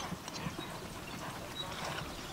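Hooves of a single harness pony trotting on grass, soft irregular thuds, with a person's short voice calls to the horse.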